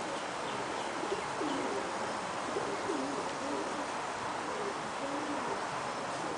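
Buchón Gaditano pigeons cooing: a run of short, low coos that rise and fall in pitch, one after another, over a steady background hiss.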